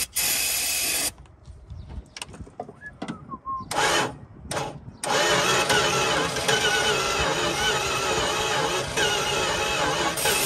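Aerosol carburetor cleaner sprayed in a one-second hiss and two short ones, then, about five seconds in, the starter of a mid-1970s Dodge Dart Sport cranking the engine continuously without it firing. It turns slowly, which the owner puts down to a nearly dead battery.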